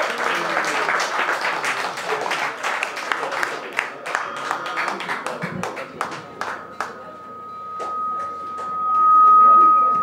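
Audience applause and voices after a song, thinning out to scattered claps. About seven seconds in, a single sustained electric guitar note starts ringing and swells, loudest near the end, as the guitarist tunes a string.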